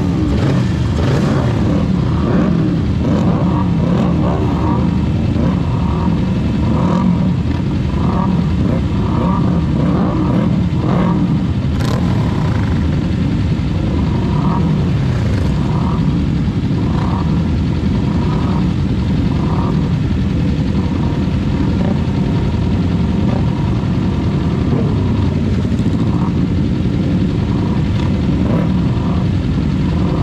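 Kawasaki Ninja 400's parallel-twin engine and the surrounding race motorcycles idling on a starting grid, with throttle blips revving up and falling back now and then.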